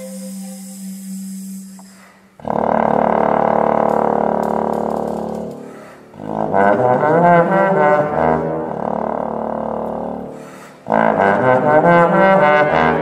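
Contemporary chamber ensemble of flute, bass clarinet, bass trombone, viola and cello playing. A quiet held low note gives way to loud sustained chords with a heavy brass sound. The chords come in suddenly about two seconds in, again about six seconds in with wavering, bending pitches, and once more near the end, each swelling and then fading.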